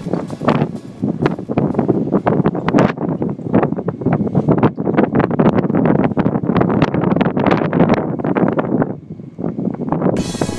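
Wind buffeting the microphone of a camera riding in a moving 4x4 Jeep, over the vehicle's running noise on sand. It eases off briefly near the end.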